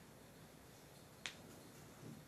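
Near silence, room tone with a single sharp click just past a second in.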